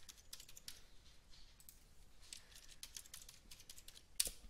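Faint typing on a computer keyboard: a run of quick, irregular key clicks.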